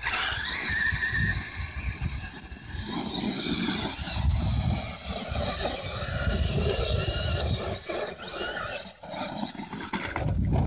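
Electric motors of a Traxxas E-Maxx RC monster truck whining, the pitch rising and falling with the throttle as it drives over sand and up a slope, over a low rumble.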